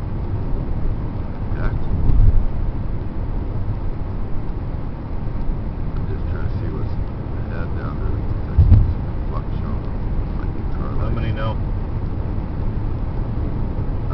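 Inside the cabin of a 2002 Chevrolet Impala on the move: steady low rumble of tyres on pavement and engine. Two low thumps stand out, about two seconds in and again near nine seconds.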